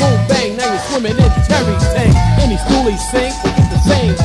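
Hip hop music with a beat, deep bass and vocals.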